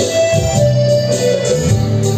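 Live band music led by an electronic keyboard playing sustained organ-like chords that change every half second or so, over a regular beat.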